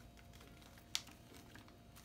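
Faint handling of plastic hair-dye developer sachets, with one sharp click about a second in.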